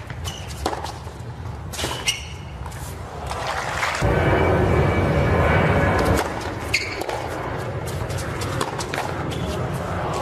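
Tennis rally on a hard court: a few sharp racket hits on the ball. About four seconds in, a crowd bursts into applause for about two seconds and then cuts off suddenly.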